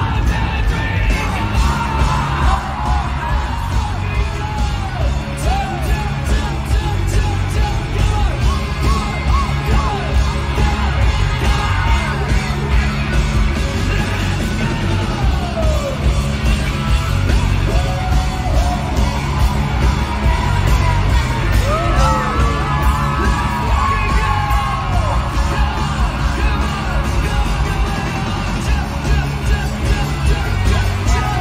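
Live rock band playing in an arena, heard through a crowd-shot recording: heavy bass and drums with guitar and vocals, and the audience yelling and singing along.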